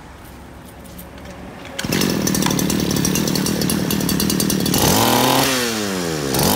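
Modified Robin 411 two-stroke brush-cutter engine starting up about two seconds in and running steadily, then revved by hand near the end, its pitch falling and rising again.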